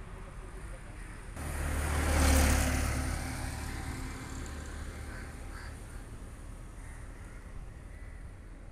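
A motor vehicle passing close by on a road. A rush of engine hum and tyre noise starts suddenly about a second and a half in, is loudest soon after, then fades over the next couple of seconds into a steady outdoor background.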